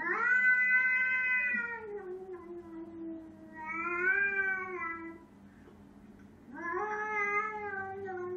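A cat meowing in three long, drawn-out calls with short pauses between them, each sliding down in pitch; the first is the longest and loudest.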